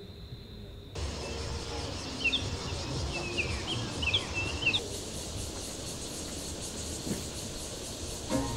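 Outdoor campsite ambience under pine trees: a bird chirps in a quick run of short rising and falling notes for a couple of seconds, over a steady background hiss. It is preceded by a faint steady hum lasting about a second.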